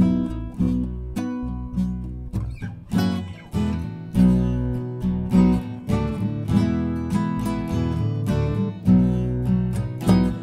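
Acoustic guitar playing an instrumental passage between sung verses, strummed chords struck about twice a second.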